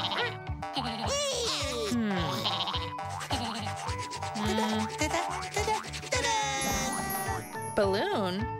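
Playful children's background music with cartoon sound effects and squeaky character voices: falling pitch glides about a second in and a rising sweep about six seconds in.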